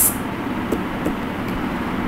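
Steady background noise during a pause in speech: room noise with no distinct event.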